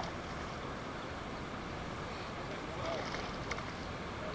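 Steady outdoor wind noise on the microphone, with a faint short voice about three seconds in and a small click just after.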